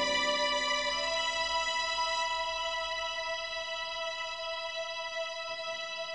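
Instrumental backing-track intro: a sustained keyboard chord held and slowly fading.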